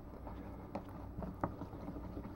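A stick stirring liquid latex and acrylic paint in a small tin, with two light taps against the tin, over a low steady hum.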